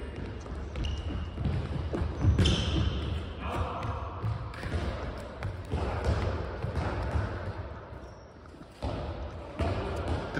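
Handball training in a large echoing sports hall: running footfalls on the wooden floor and irregular thuds of the handball, with faint voices.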